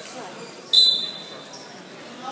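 Referee's whistle: one short, shrill blast about three quarters of a second in, fading quickly, over faint crowd chatter.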